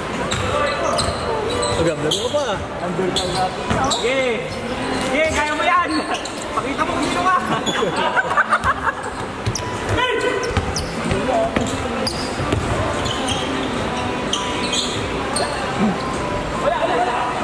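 A basketball bouncing on a hardwood court in a large indoor hall, with players' voices calling across the court.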